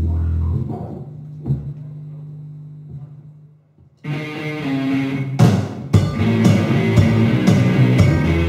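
Low bass notes ring and fade away until it is almost quiet, then an electric guitar starts the song about four seconds in; two loud drum hits follow and the full rock band, drums, bass and guitar, comes in and plays on.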